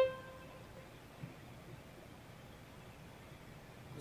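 One synthesized note from a computer's MIDI playback of an extracted melody line sounds right at the start and fades within about half a second. After it there is only faint hum: the melody-extraction output leaves out everything but the melody.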